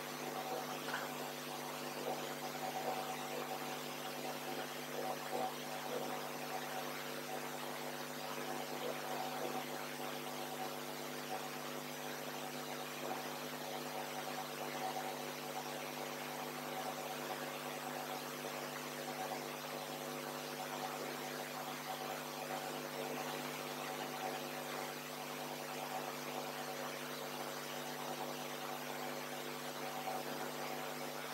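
Steady electrical hum with a stack of evenly spaced overtones, over a faint hiss of room noise.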